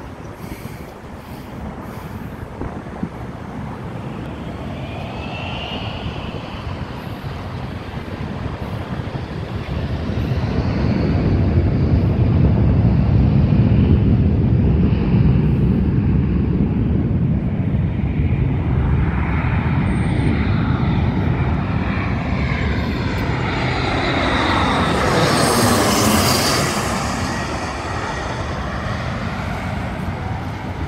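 Jet airliner passing low overhead on its landing approach. The engine noise builds to a loud rumble, and near the end the whine drops in pitch as the jet goes over.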